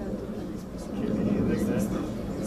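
Indistinct, overlapping voices of people talking in a room, over a steady low rumble.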